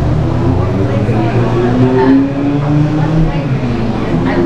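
Indistinct voices of people talking in a busy shop, over a steady low hum.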